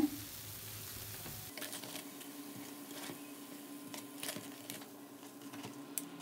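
Faint sizzling of hot frying oil in a pan, with a few light clicks. A steady low hum sets in about a second and a half in.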